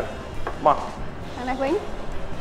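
Food sizzling in pans and utensils stirring at several cooking stations, a low steady kitchen noise, with a couple of short spoken words over it.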